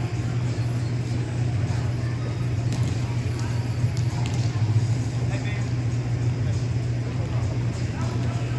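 Ambience of a large indoor sports hall: a steady low hum under the distant chatter of many voices, with a few faint knocks about three to four seconds in.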